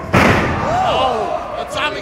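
A wrestler slammed down onto the wrestling ring's canvas-covered boards, one loud thud just after the start, followed by voices shouting from the crowd.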